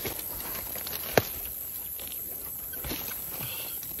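Faint rustling and crackling of dry scrub, with one sharp snap about a second in and a few lighter ticks near the end.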